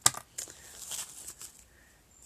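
Hands rummaging through a small fabric pouch of knitting and sewing odds and ends. There is a sharp click at the very start, then soft rustling and a few light clicks of small items being moved about.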